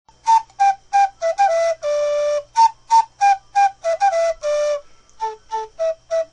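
Background music: a solo breathy, flute-like wind instrument plays a short falling phrase of detached notes that ends on a longer held low note, then plays the same phrase again. Near the end come two softer short notes.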